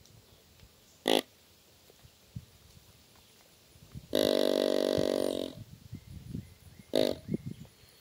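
Quad Grunter XT deer grunt call blown through its ribbed tube: a short grunt about a second in, a longer held grunt a little after four seconds, and another short grunt near the end.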